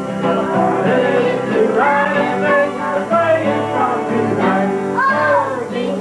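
Live amateur Christmas music: a 1979 Guild D40C acoustic guitar strummed alongside an electric guitar, with a man singing lead and family members singing along.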